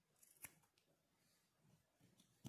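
Scissors snipping through wool yarn once: a faint, sharp snip about half a second in, with a soft rustle of yarn just before it.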